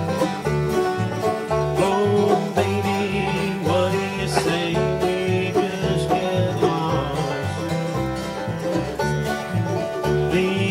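Bluegrass band playing an instrumental passage with no singing: banjo rolls, strummed acoustic guitars and mandolin over an upright bass plucking a steady bass line of about two notes a second.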